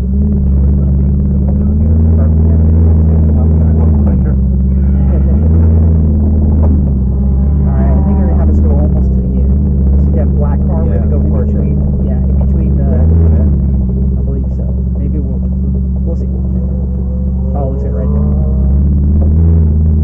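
Ferrari 458's V8 engine running at low revs, heard from inside the cabin: a steady low hum that swells briefly a few times as the car creeps along.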